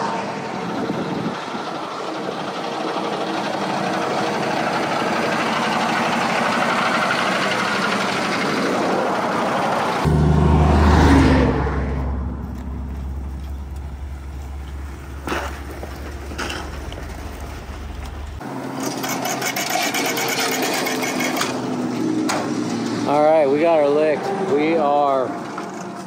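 A heavy truck passing on the highway, its road noise building and fading over several seconds. It is followed by a steady deep rumble, then a stretch of noise, and a man's voice near the end.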